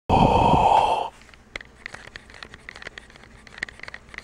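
Intro sound effect of electronic static: a loud hiss lasting about a second, then faint scattered crackles and clicks.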